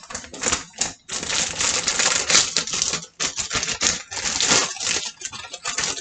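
Plastic bread bag crinkling and rustling as it is handled and opened. It comes in short bursts at first, then in a long, dense spell about a second in, then in bursts again.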